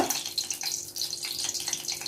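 Hot ghee sizzling in a kadhai over a gas flame, a steady fine crackle of many small pops.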